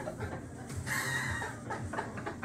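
Scattered chuckles and brief laughs from a small audience.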